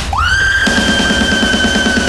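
Hard rock music: a single high note slides up right at the start and is held steadily over drums.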